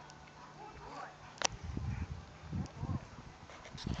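A dog whining faintly, with low bumps on the phone's microphone and a sharp click about a second and a half in.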